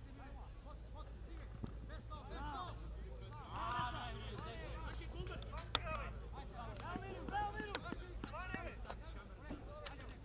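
Players shouting to each other across an open grass football pitch, several voices calling out in turn, with a sharp knock about six seconds in.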